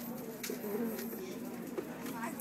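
A six-month-old baby cooing softly, a low, gently wavering hum held on through the moment.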